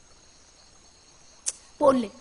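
Faint, steady chirping of night crickets. About one and a half seconds in there is a single sharp click, and just before the end a short burst of a voice.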